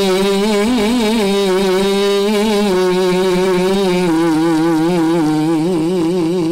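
A man's voice in melodic Qur'an recitation (tilawah), holding one long vowel with rapid wavering ornaments, sung loud into a microphone; the held note steps down slightly about three seconds in.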